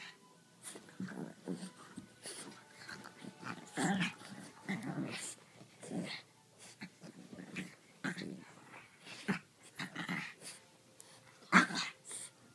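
A French bulldog and a griffon play-fighting, with short bursts of growling and heavy breathing at irregular intervals; the loudest burst comes near the end.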